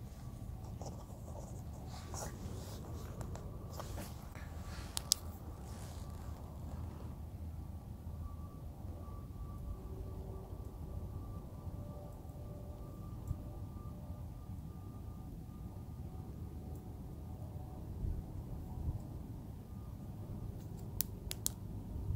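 Faint, steady low outdoor background noise with a few soft clicks and rustles, as from a flashlight being handled in the hand.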